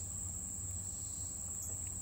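Outdoor insects trilling in one steady, high-pitched unbroken tone, over a faint low hum.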